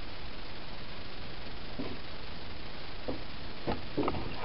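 Steady hiss of background noise, with a few faint, brief sounds in the second half.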